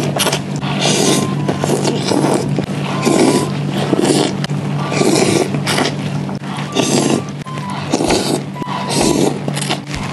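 A person slurping noodles, long noisy sucks repeating about once a second, over quiet background music.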